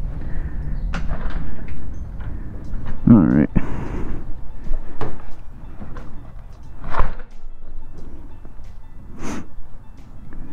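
An interior door is opened and closed, with scattered knocks and clicks of handling. The loudest thump comes about seven seconds in.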